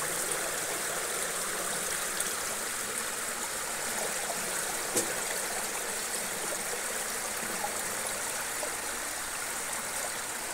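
Shallow water flowing steadily over the bamboo-slat floor of a traditional fish trap and draining between the slats, with a light tap about halfway through.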